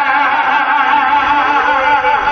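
Live gospel singing through a microphone and PA: a male singer drawing out long notes with vibrato, with musical backing.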